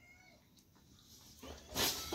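A Labrador whining faintly in thin, high, wavering notes at the start, followed near the end by a brief louder rustling burst.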